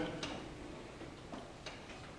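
A pause in a man's speech: quiet hall noise with a few faint, sharp clicks, one just after the start and three close together in the second half.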